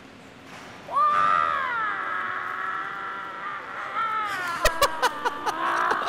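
A man's long, high, wavering yell, held for about five seconds from about a second in, like a kung-fu cry. A few sharp knocks come near the end.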